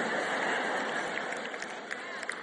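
Large live audience laughing, a steady wash of crowd noise that slowly dies away.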